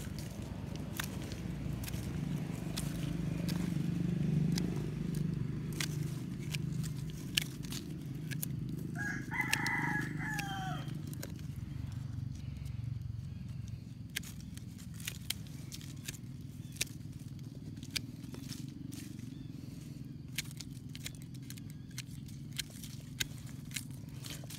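A rooster crows once, about ten seconds in, over a steady low background rumble. Scattered light clicks run throughout from pruning shears snipping and working fig shoots.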